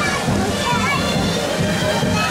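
Children's voices and chatter over background music and a steady wash of noise.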